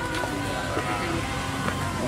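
Music with several steady held tones, a little quieter than the surrounding talk.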